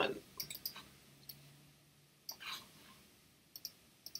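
Quiet computer mouse clicks: a few in the first second and two close together near the end, the click having to be repeated before the style took effect. A brief soft noise comes about halfway through.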